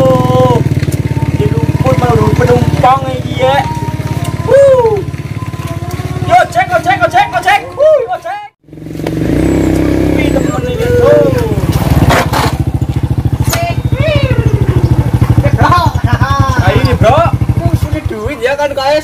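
A motorcycle engine running steadily with a low rumble, cut off for a moment about halfway through. Over it a person's voice rises and falls in drawn-out tones.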